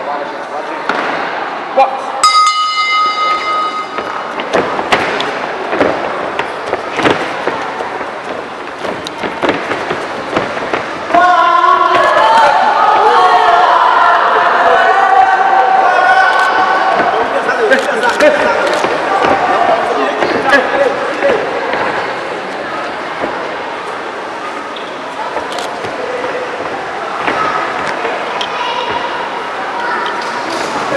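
A boxing ring bell rings once about two seconds in, starting the round, and then the thuds of gloved punches and shuffling footwork on the ring canvas follow. From about eleven seconds in, people in the hall shout loudly for about ten seconds.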